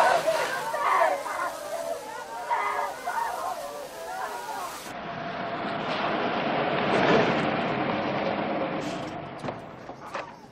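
Many voices calling out from crowded cattle cars over the hiss of hose spray. Then a vintage car's engine and tyres swell as it drives up and fade as it comes to a stop, with a couple of sharp knocks near the end.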